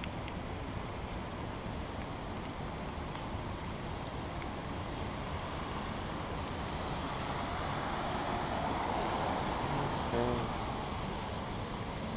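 Steady hiss of rain and traffic on wet roads, swelling gradually to a peak about ten seconds in.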